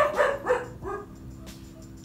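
Dog barking, a few short barks in the first second, then stopping.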